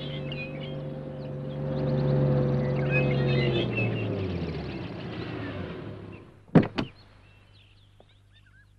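A van's engine comes near, grows louder, then fades and drops in pitch as the van slows to a stop. Two sharp clicks follow about six and a half seconds in.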